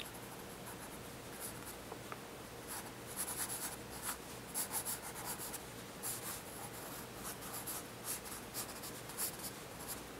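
A pencil scratching on drawing paper in quick sketching strokes. The strokes are sparse at first and come in frequent short runs from about three seconds in.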